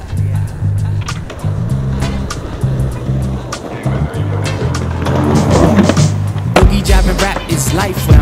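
Skateboard wheels rolling over pavement, with sharp clacks from the board, over background music with a repeating bass line. The board sounds grow louder in the second half, with a low rumble.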